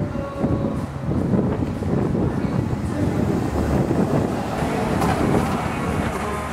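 Low, steady rumble of a vehicle on a street, mixed with street noise.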